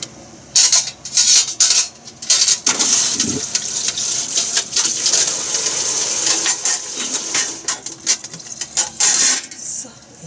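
Metal kitchenware, pans and utensils, clattering and clinking in a string of sharp knocks. From about three seconds in to near the end, a steady high hiss runs beneath them.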